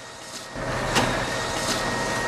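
Ricoh office printer running as a printed page feeds out into the output tray: a steady mechanical running noise that grows louder about half a second in, with a few light clicks.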